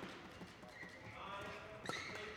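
Faint sports-hall background, then near the end one sharp, short hit of a badminton racket on the shuttlecock: the serve that opens the rally.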